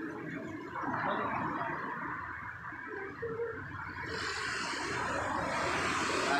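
Street traffic: cars and scooters passing on the road, a steady noisy rush that grows louder and harsher about four seconds in.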